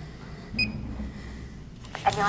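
A single short electronic beep, about half a second in, from an ADT fingerprint time-clock terminal as a finger is pressed on its scanner to clock in, over faint low room noise.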